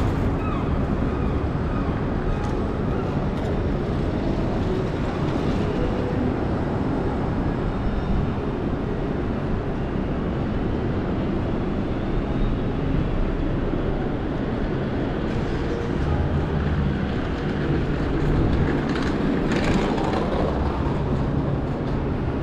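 Steady low rumble of city street traffic: cars and buses passing on a downtown street.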